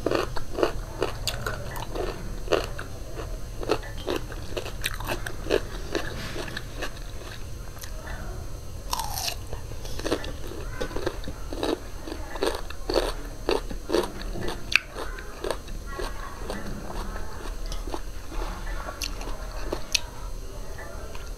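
Close-miked crunching and chewing of raw cucumber chunks, with wet mouth clicks, bite after bite.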